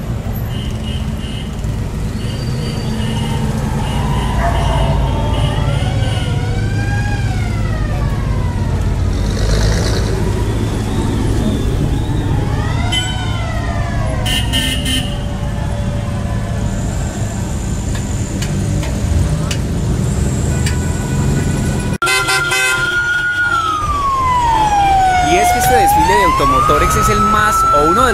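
Old cars driving slowly past in a street parade, their engines rumbling low under the voices of onlookers. Near the end a siren wails once, sliding down in pitch and back up.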